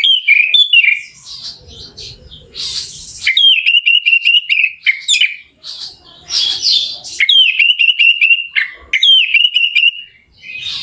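Orange-headed thrush singing a loud, varied song. It opens with a quick run of falling notes, then gives three long phrases of rapid trilling held on one pitch.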